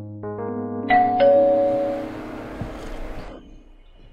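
Electronic doorbell chime: a quick rising run of notes, then a two-note ding-dong, high then low, ringing out and fading over about two seconds.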